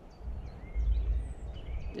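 Outdoor ambience: faint birdsong with short chirps and a brief whistle, over a low rumble that swells about a second in.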